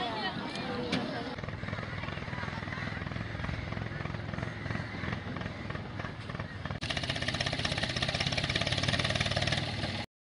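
An engine running steadily with a fast rhythmic pulse, turning louder and rattlier about seven seconds in; faint voices at the start.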